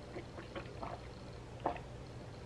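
Faint swallowing and mouth sounds from a person who has just downed a juice shot: a few small gulps and throat noises in the first second, then one sharper smack about one and a half seconds in, over a low room hum.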